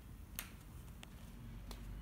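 Three light, sharp clicks about two-thirds of a second apart over low room noise.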